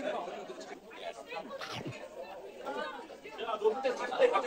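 Indistinct chatter of several voices talking at once in a restaurant dining room.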